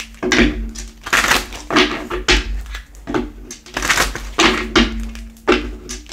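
A deck of tarot cards shuffled by hand: repeated sharp riffling, slapping bursts, about one or two a second, over a steady low hum.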